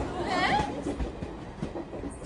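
Passenger train carriage running, a steady rumble with a few faint clicks of the wheels on the rails, heard from inside the compartment; a brief wordless voice sound comes about half a second in.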